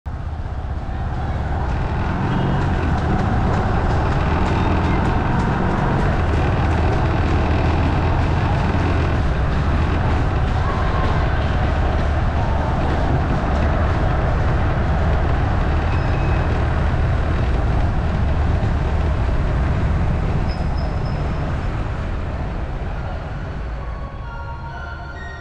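Steady road and engine noise from a motorbike riding along a city street, picked up by a camera mounted on the bike, with a heavy low rumble. It fades in at the start and drops off near the end.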